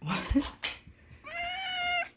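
A domestic cat meows once, a long call that begins about a second in and holds nearly one pitch. A couple of short clicks come just before it.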